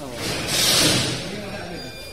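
Voices of people talking at a fish stall, with a loud hiss lasting about a second that starts just after the beginning.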